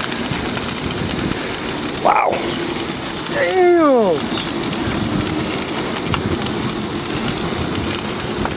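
Large bonfire of wood and old doors burning hard: a steady, dense crackling like heavy rain. A person's voice calls out twice over it, a short rising cry about two seconds in and a longer falling call around three and a half seconds.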